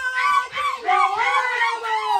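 A group of women singing and chanting loudly together, with high gliding cries, over steady music.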